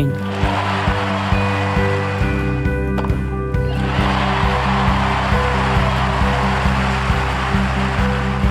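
Background music of sustained low chords over a crowd cheering and applauding. The crowd noise dips briefly around three seconds in, with a single sharp knock, then swells again and holds to the end.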